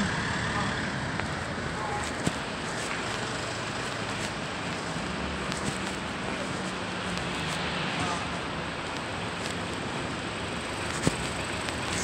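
Steady city street noise with traffic sound, broken by a few short clicks.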